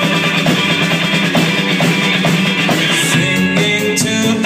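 Live rock band playing loud and continuous: drum kit hits over electric guitars.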